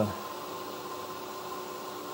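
A steady machine hum: several fixed tones over a faint even hiss, with no change in pitch or level.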